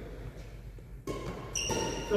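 Badminton play on a wooden sports-hall floor: a sudden sound about a second in, then a short, high-pitched squeak near the end, typical of trainers squeaking on the court.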